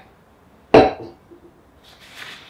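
A 32-ounce Hydro Flask stainless steel tumbler set down on a hard surface: one sharp knock with a brief ring, about three quarters of a second in.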